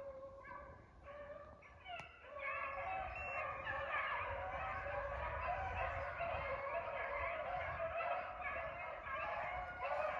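A pack of beagles baying while running a rabbit. The calls are scattered at first and swell into a steady chorus of many dogs from about two seconds in.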